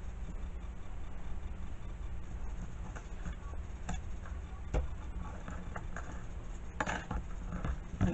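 Light rustling and small taps of card stock and washi tape being handled on a cutting mat, over a steady low hum, with one sharp tick a little past halfway and a short burst of rustling near the end.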